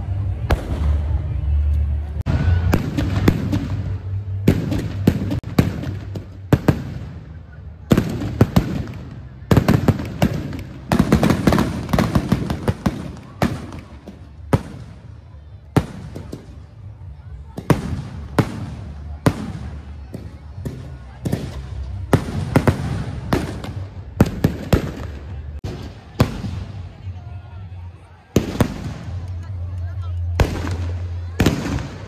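Firecrackers and fireworks going off in quick, irregular runs of sharp bangs and crackles throughout.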